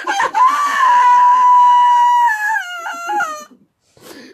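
A woman's voice holding one long, high, loud wailing note. It stays level for about two seconds, then drops in steps near the end before breaking off.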